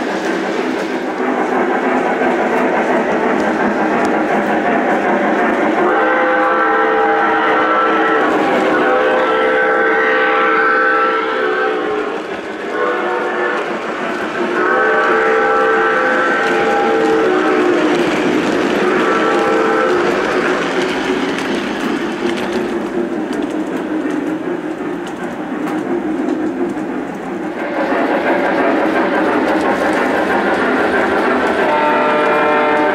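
Lionel O-gauge Southern Pacific GS-2 steam locomotive running on track with a steady running noise, while its onboard sound system blows a multi-tone steam chime whistle in several long and short blasts between about 6 and 20 seconds in.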